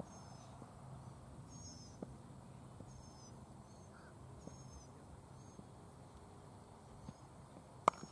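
A cricket bat striking the ball with one sharp crack near the end, over a faint outdoor background with high chirps repeating throughout.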